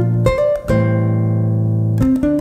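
Nylon-string Yamaha silent guitar being fingerpicked: two quick plucked notes, then notes left ringing for over a second over a sustained low bass note.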